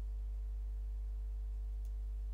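Steady low electrical hum, the mains hum of the recording setup, with one faint click near the end.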